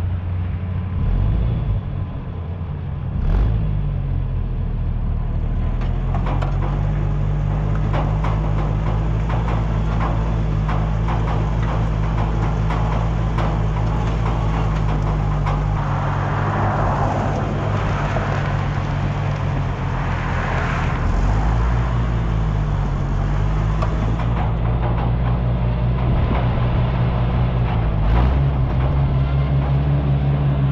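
Oliver 880 tractor's Waukesha six-cylinder engine running steadily under way, its speed dipping and picking back up a few times. Rattling and clicking from the towed grain drill runs underneath, with a rougher, louder stretch about halfway through as the rig comes off the field onto the road.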